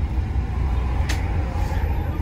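Outdoor street ambience: a steady low rumble with one brief sharp click about a second in.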